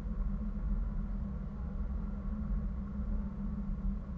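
Wind buffeting an action camera's microphone high in the air under a parasail: a steady low rumble with no other clear sound.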